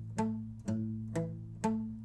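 Acoustic guitar playing a palm-muted arpeggio on an A minor chord: single notes picked one after another on the fifth, fourth and third strings in a down-up-up pattern. There are four plucks, about two a second, each note dying away under the palm.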